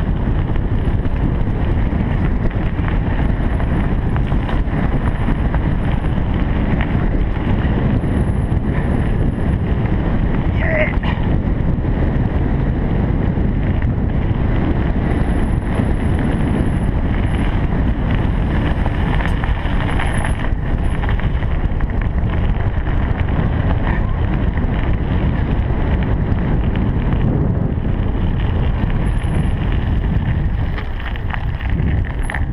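Steady low wind rumble buffeting a bike-mounted camera's microphone while riding along a gravel track, mixed with the rolling noise of the bicycle.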